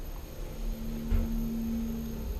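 Kone traction elevator car travelling upward: a low rumble of the ride with a steady hum from the drive, and a soft low thump about a second in.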